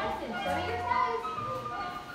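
Recorded music with a melody of held notes and a bass line, playing for a children's ballet class, with young children's voices over it.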